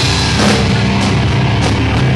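Live hardcore/metal band playing loud: distorted electric guitar and bass holding low sustained notes, with a couple of crashes from the drum kit.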